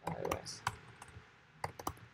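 Computer keyboard being typed on: a handful of separate keystroke clicks, ending in a quick run of three.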